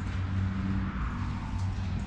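A vehicle engine running steadily with a low, even hum.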